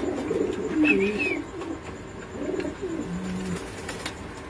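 Domestic pigeons cooing: a run of low, wavering coos, with a brief higher-pitched note about a second in.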